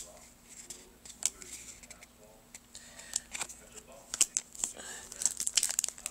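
Pokémon trading cards being handled and flicked through by hand: a scattered series of quick, sharp card snaps and slides, with some crinkling.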